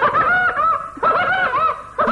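High-pitched laughter, 'ha ha ha', in two quick runs of about four syllables each, with a short break about a second in.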